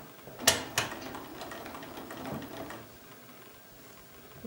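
Bernina sewing machine starting to stitch a curved seam: two sharp clicks about half a second in, then a run of lighter ticks that stops about a second before the end.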